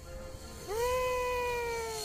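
A person's long, high-pitched cry, starting about two-thirds of a second in, rising sharply and then sliding slowly down in pitch.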